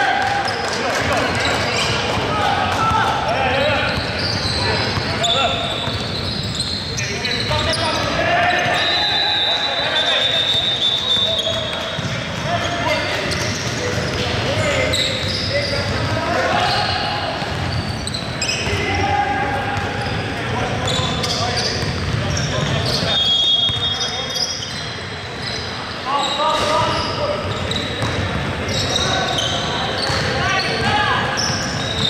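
Live basketball game in a reverberant gymnasium: the ball bouncing on the hardwood floor and players calling out to each other, with a couple of brief high squeaks.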